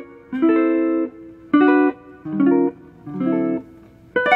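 1967 Gibson ES-335 semi-hollow electric guitar played clean, four short picked chord stabs with brief gaps between them, the last two pitched lower.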